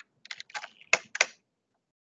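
Typing on a computer keyboard: a quick run of about half a dozen keystrokes in the first half, then it stops.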